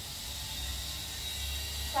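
Steady low hum with a faint hiss: background room tone with no distinct sound event.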